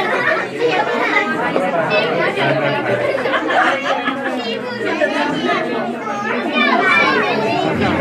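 Many people talking over one another at once: steady crowd chatter in which no single voice stands out.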